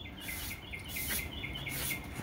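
Evening chorus of chirping insects: a rapid run of short chirps, about six a second, over a high buzz that pulses about twice a second.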